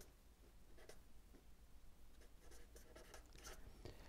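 Marker pen writing a word in a series of short, faint strokes.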